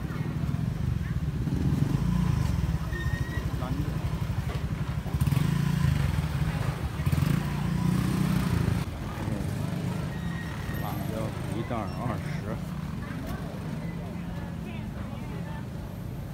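Busy market ambience: a motorcycle engine runs close by with a low, pulsing rumble that is loudest in the middle and fades after, under scattered background voices.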